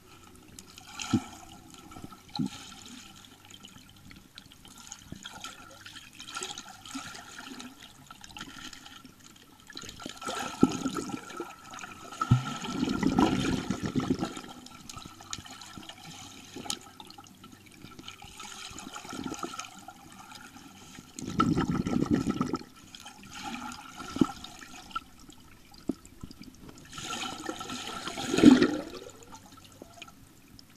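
Water heard underwater in a swimming pool: muffled rushing and bubbling as a swimmer moves through it, swelling in several surges, the loudest near the end, over a faint steady tone.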